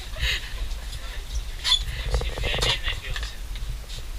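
Indistinct voices in a small room over a steady low rumble, with no clear single sound standing out.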